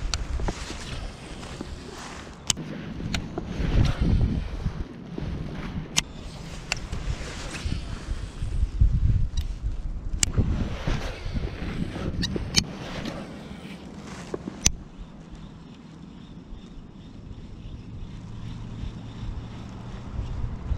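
Wind buffeting the microphone and water moving around an inflatable kayak, in uneven swells, with about ten sharp clicks scattered through the first fifteen seconds from handling a baitcasting rod and reel.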